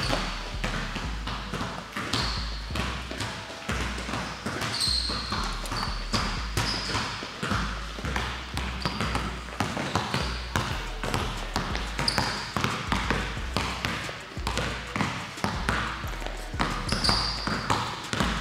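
A basketball dribbled over and over on an indoor court floor, with short high sneaker squeaks as the players shuffle and cut side to side.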